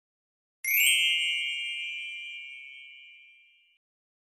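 A single bright ding, like a small bell struck once, about half a second in, ringing on and fading away over about three seconds.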